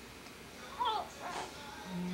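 Baby giving two short high-pitched squeals, each falling in pitch, about half a second apart.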